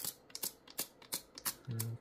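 Adhesive dust-absorber sticker dabbed again and again on a phone's glass screen to lift lint: a run of short sticky ticks, about three a second.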